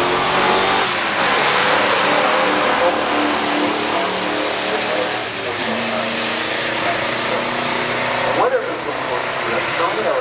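Two V8 muscle cars at full throttle in a drag race, a 1972 Ford Gran Torino Sport and a 1962 Chevrolet Corvette with its small-block V8, heard from the grandstand as they run down the track. The engine notes shift in pitch several times along the run.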